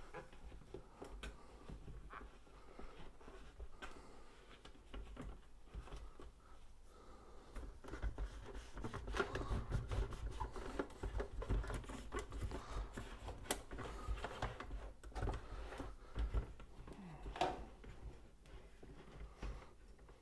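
Paper towel wiping the inside of a hot-air popcorn popper: faint rubbing and rustling with scattered small clicks and knocks of handling, busier about halfway through.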